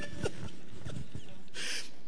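Soft, faint laughter and chuckling after a joke, in short broken bursts, with a brief breathy hiss near the end.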